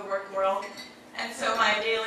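A woman talking into a microphone, with dishes and cutlery clinking in the background.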